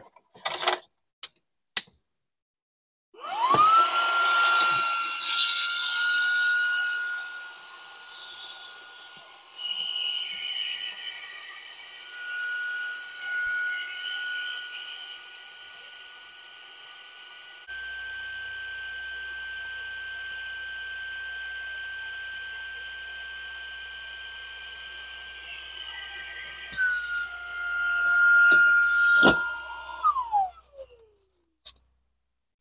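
A few button clicks, then a Fanttik portable air compressor/inflator starts about three seconds in: its motor spins up with a quick rising whine and runs as a steady high whine with a rush of air while it inflates an air mattress. The pitch steps slightly up and back down partway through, and the whine falls away as the motor winds down at the very end.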